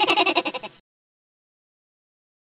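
A short, quavering, voice-like cry lasting just under a second.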